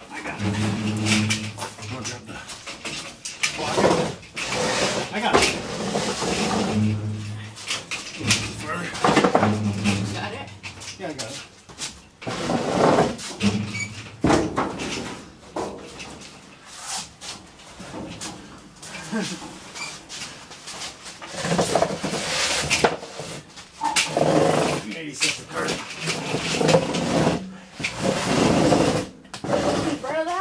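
Steel pickup truck bed being pushed and slid off its frame: repeated clunks, bangs and metal scraping at irregular moments, with low straining voices in between.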